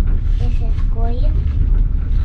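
Steady low rumble of a moving passenger train heard from inside a sleeping-car compartment. A voice speaks briefly about half a second in.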